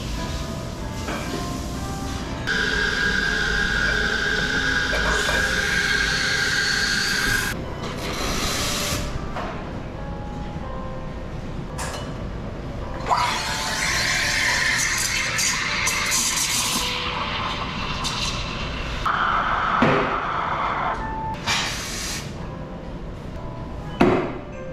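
Commercial espresso machine giving three long bursts of hissing, each with a steady whistling tone, while it is purged and cleaned. Background music plays under it.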